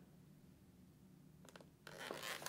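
Near silence, with faint handling of the helmet interior near the end: a couple of light clicks and then a soft rustle.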